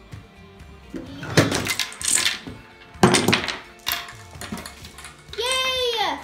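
Background music under children's voices: a shout of "go", loud bursts of voices, and near the end one long high cry that rises and then falls.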